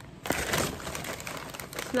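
Crinkling and rustling of a plastic snack bag and a brown paper shopping bag as the snack bag is pulled out, from about a quarter second in until speech begins at the very end.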